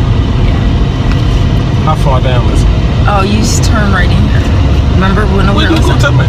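Steady low rumble of road and engine noise inside a moving car's cabin, with voices talking over it from about two seconds in.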